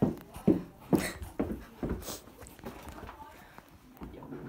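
A phone being grabbed and shaken, handling noise on its microphone: a sharp click at the start, then a run of short knocks and rubbing that dies down near the end, with snatches of voice.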